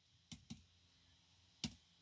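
Two faint fingertip taps in quick succession on the back of an iPhone, a double tap that triggers Back Tap, then one more faint click about a second later.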